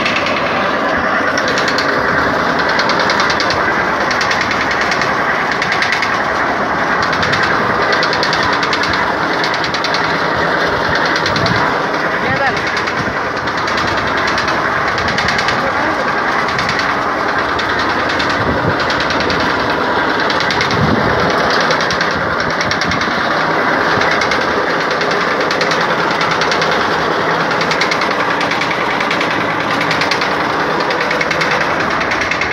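A home-built flywheel machine running: a large spoked wheel driven through a crank and connecting rod, giving a steady, loud mechanical clatter and knocking.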